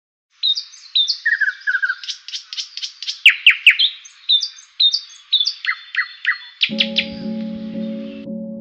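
Birds singing: a quick run of chirps and short whistles, several sweeping down in pitch, repeated throughout. Soft music with held chords comes in near the end.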